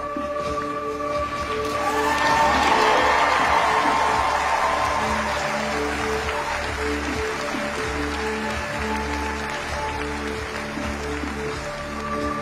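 Audience applause swelling about two seconds in and slowly fading, over background music with sustained notes.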